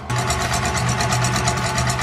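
KitchenAid Classic stand mixer's motor running steadily, beating cream in its steel bowl, with a fast even whirr. It gets louder just after the start.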